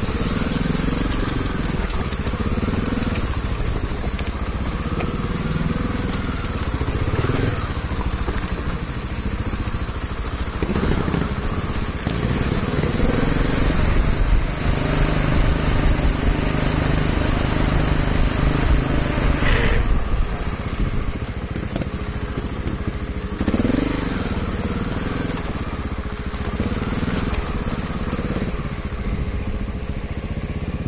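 Trials motorcycle engine running at low revs that rise and fall, heard from on the bike.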